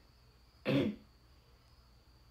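A girl's single short cough, with her fist held to her mouth, a little under a second in.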